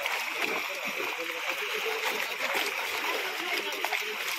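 Many fish splashing and thrashing at the water's surface as they leap against a fishing net, a continuous patter of splashes, with voices in the background.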